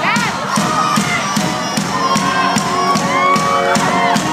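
Live drum kit played at a steady beat of about four hits a second, with a large crowd cheering and shouting in high voices over it.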